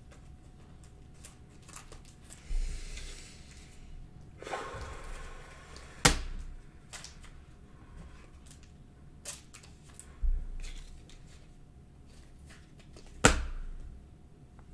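Hands handling a clear plastic cello-pack wrapper and trading cards on a table: brief crinkling of the plastic and scattered light clicks and taps, with two sharper clicks about six seconds in and near the end.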